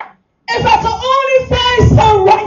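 A high voice singing held notes, coming in abruptly about half a second in after a brief silence.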